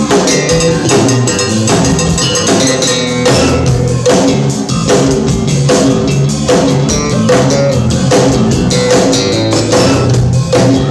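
Live band playing an instrumental passage: drum kit keeping a steady beat under electric guitar and bass.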